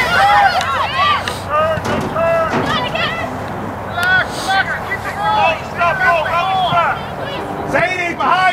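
High voices of several people shouting and calling out across the field in many short, overlapping calls with no clear words.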